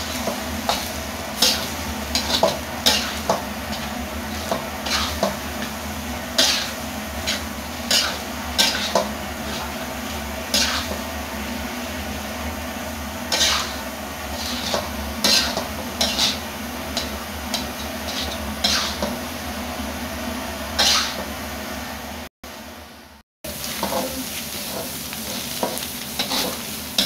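Metal spatula scraping and clattering against a wok as fried rice is stirred and tossed, in irregular strokes over steady sizzling. The sound cuts out for about a second near the end.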